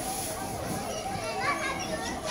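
Children talking and calling out in the background, with a brief burst of higher voices about one and a half seconds in. Under them runs a continuous tone that wavers up and down a few times a second.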